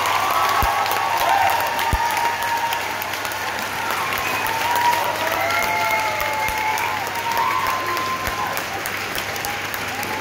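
Concert audience applauding and cheering at the end of a song, a steady wash of clapping with shouted cheers rising and falling through it.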